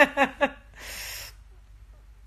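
A woman laughing: a few short voiced bursts, ending about a second in with a breathy exhale.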